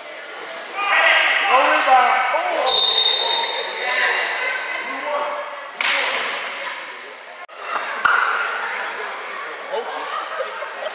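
Sounds of an indoor basketball game in an echoing gym: players and spectators calling out, a basketball bouncing, and high squeaks of sneakers on the court. The sharpest single sound is a bang about six seconds in.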